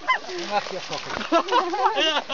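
People laughing: a run of short, high, pitch-bending laughs.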